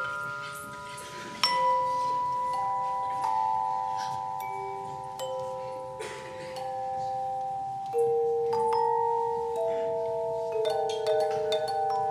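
A handbell ensemble playing a slow piece: several bells ring together, each note struck and left ringing for seconds as the notes change, with one trembling note near the end.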